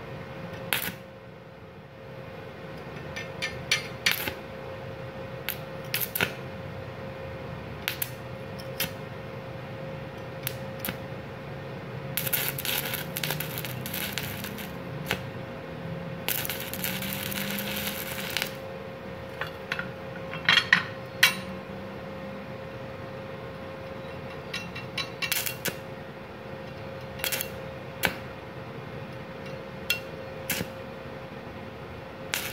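Stick (MMA) welding arc from a Multipro 160A inverter welder with a 2.6 mm electrode, run on a 900-watt household supply: the arc is struck again and again in short crackling snaps, with two sustained crackling runs of about two seconds each in the middle. A steady high hum sounds underneath.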